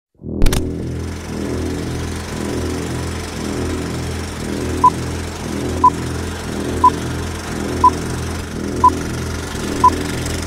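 Film-projector sound effect: a steady low mechanical clatter after a sharp click at the start. From about five seconds in, a short beep sounds once a second, six times, marking the film-leader countdown.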